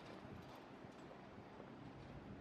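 Faint footsteps on a paved sidewalk, about two steps a second, over a low steady hum of city traffic.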